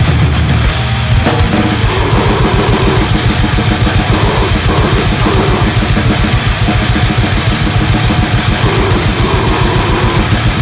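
Grindcore band playing fast, with rapid, even drumming under distorted guitar and bass.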